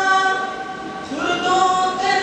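A young man singing a hamd, an Urdu hymn of praise to God, unaccompanied into a microphone, holding long notes. The voice dips about a second in, then a new phrase starts with a rising slide.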